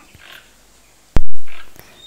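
A single loud, sharp click a little past halfway, over faint background sound.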